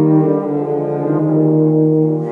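Brass trio of French horn, trombone and tuba playing long held notes, moving slowly from one chord to the next.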